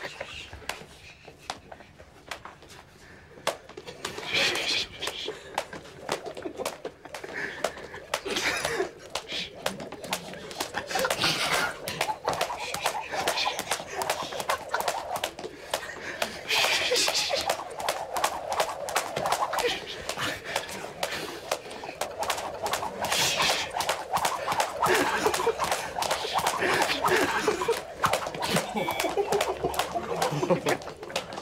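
A boxer's jump rope slapping again and again against the floor and a person, with held-in laughter, gasps and hushed voices.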